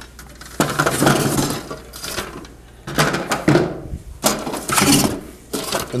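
Grey plastic sections of a TJ4200 ceiling air inlet being taken out of their box and set down on a table: three spells of knocking and clattering of hard plastic, with quieter handling in between.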